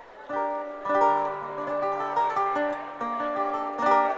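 Acoustic guitars strumming chords in a steady rhythm, starting about a third of a second in.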